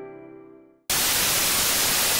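Piano music dying away, then a loud burst of television-static hiss cuts in abruptly just under a second in and holds steady.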